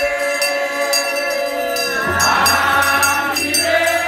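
Congregation singing a hymn together in long, held notes, with a tambourine jingling in a steady beat.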